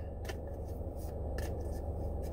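Steady low hum inside a car's cabin, with a few faint light clicks.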